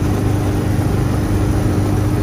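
Austin 7's small four-cylinder side-valve engine running steadily at speed, heard from inside the cabin as the car cruises at nearly 50 mph.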